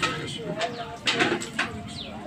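Low cooing bird calls mixed with indistinct voices, and a couple of sharp knocks about a second in.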